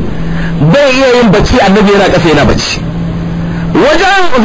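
A man's voice preaching: one short spoken phrase in the middle, with pauses either side in which a steady low hum is heard.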